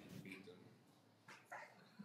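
Near silence: quiet room tone in a pause between speech, with two faint, brief sounds, one near the start and one about a second and a half in.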